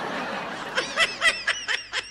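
A person laughing: a breathy, airy laugh that turns into a quick run of short, high-pitched snickers.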